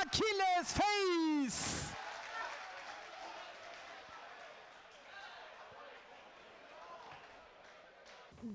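A man's excited Swedish race commentary for about a second and a half, then a faint, even background hiss that slowly fades, with no distinct sound in it.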